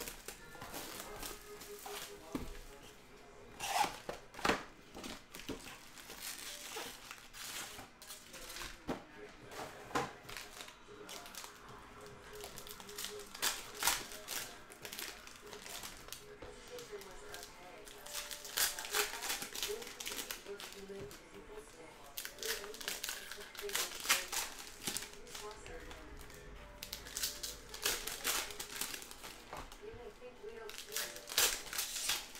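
Plastic-foil trading-card pack wrappers and box cellophane being crinkled and torn open by hand, in many short, sharp crackling bursts.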